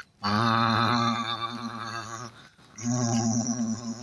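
A man's voice making low, drawn-out growling engine noises, two long sounds with a short break between, imitating a digger working.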